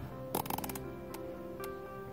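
Background music over a few sharp clicks from a Vortex Diamondback Tactical rifle scope's elevation turret being turned: a quick run of clicks about half a second in, then two single clicks.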